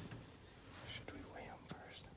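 A person whispering faintly, with a soft click near the end.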